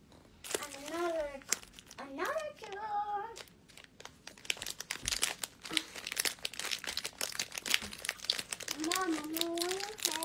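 A child's high-pitched voice calling out in short bursts three times, with dense crinkling and crackling from about halfway in.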